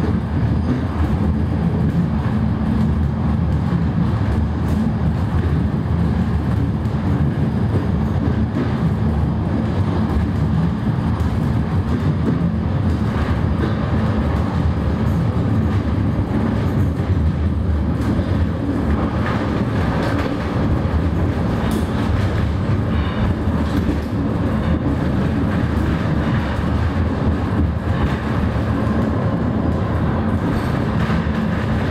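Underground funicular car (Metro Alpin, built by Von Roll) running uphill through its tunnel, heard from inside the car: a loud, steady, low rumble of the running gear on the rails.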